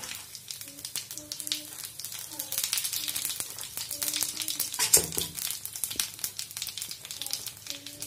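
Cumin seeds crackling and sizzling in hot oil in a kadhai, a dense continuous fine crackle. There is a single knock just before five seconds in.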